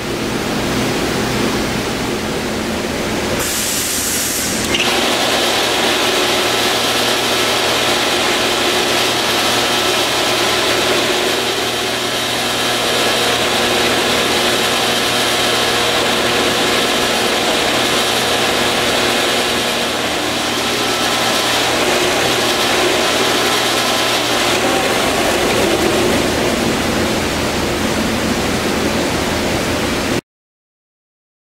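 Enco 6-inch by 48-inch belt sander running steadily: an electric motor hum under a continuous hiss from the moving belt, with a brief higher hiss about four seconds in.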